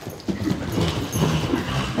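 Racehorse on the lunge striking off into a fresh, lively canter on a sand arena surface. Low, uneven sounds from the horse start about a quarter of a second in.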